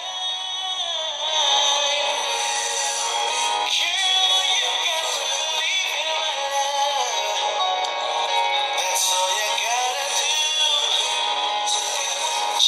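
A man singing a love song over backing music. The sound is thin, with almost no bass.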